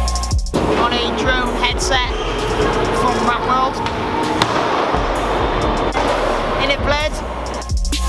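Live ambience of an indoor skatepark: a steady wash of noise with distant voices. Electronic background music cuts out about half a second in and comes back near the end.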